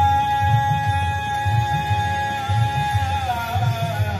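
Live Hindustani devotional bhajan in raga Bhairavi: the singer and harmonium hold one long note that wavers near the end. Tabla keeps a steady beat underneath.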